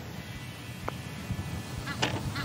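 A putter striking a golf ball once, a faint click about a second in, over a low uneven rumble.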